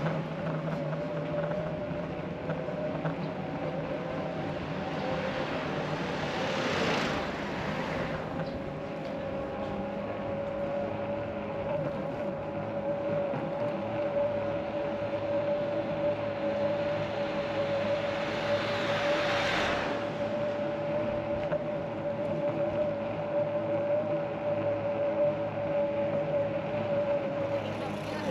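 Riding noise from an electric-assist bicycle moving along a street: a steady mid-pitched whine under road and wind noise. The noise swells twice, about seven seconds in and again near twenty seconds, and the whine cuts off at the end.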